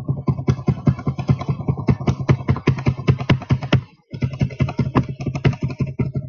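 Rapid typing on the Toshiba NB505 netbook's own keyboard, picked up by its built-in microphone, so each keystroke is a sharp click with a dull thump. There are several strokes a second, with a short break about four seconds in.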